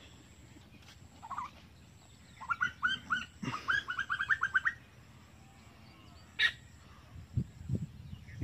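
A bird calling: one short note about a second in, then a fast run of repeated chirping notes for about two seconds. A single sharp click follows about six seconds in.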